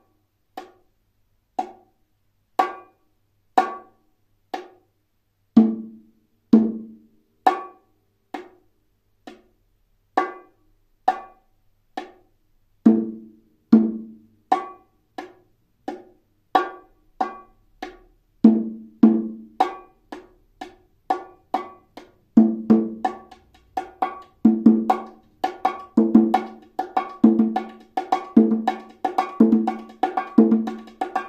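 Hand-played bongos repeating a martillo-style pattern of high strokes on the small drum and deeper strokes on the larger drum. It starts slowly, about one stroke a second, and gradually speeds up to about three strokes a second.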